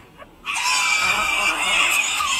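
A crowd of cartoon farm animals, chickens among them, screeching and squawking all at once. The loud din starts about half a second in and keeps going.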